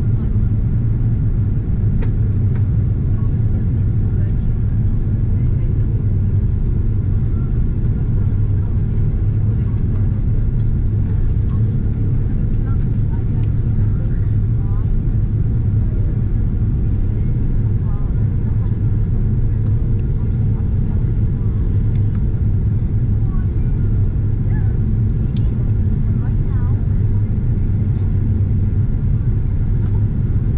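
Steady low cabin roar of a jet airliner in flight, the drone of engines and airflow heard from inside the cabin.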